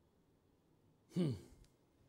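A man's short voiced sigh about a second in, its pitch falling steeply; otherwise quiet room tone.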